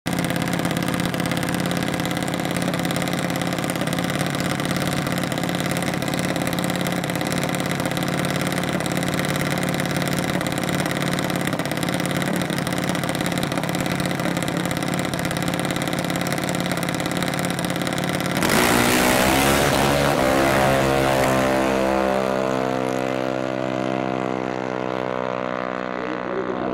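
Junior dragster's single-cylinder engine idling steadily on the start line, then launching about two-thirds of the way in: suddenly louder and revving up as it accelerates away down the strip, fading with distance near the end.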